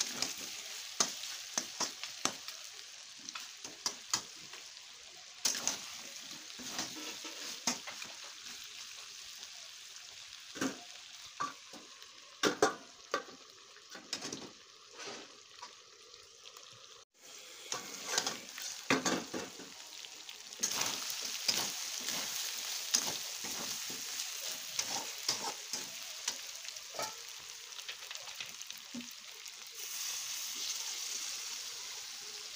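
Chicken masala frying and sizzling in an aluminium kadai, stirred with a metal spatula that scrapes and clinks against the pan over and over.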